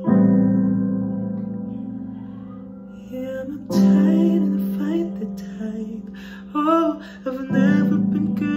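A young man singing a slow ballad over sustained accompaniment chords that are struck about every four seconds and left to fade. His voice comes in short phrases about four seconds in and again near the end.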